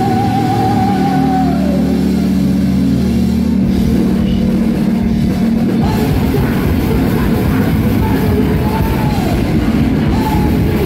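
Thrash metal band playing live at full volume: distorted electric guitars, drum kit and shouted vocals through the PA. A held note at the start falls away, and about four seconds in a sustained chord gives way to full-band playing with drums.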